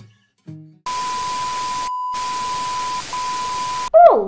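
Edited-in sound effect: a steady high beep tone over loud, even static hiss, lasting about three seconds with a brief break a second after it starts. A short plucked guitar note comes just before it, at the tail of the intro music.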